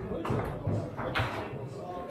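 Table-football play: the hard ball knocking against the plastic players and the rods thudding against the table, a few sharp knocks and dull thuds, the strongest knock just after a second in, over voices in a large hall.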